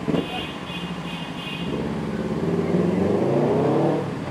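Car engine running and revving up, its pitch rising through the second half and cutting off abruptly at the end.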